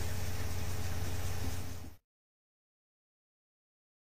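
Hydro-excavation truck running: a steady low hum with an even hiss, fading out about halfway through, then silence.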